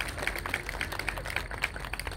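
Audience applauding, with many hands clapping irregularly.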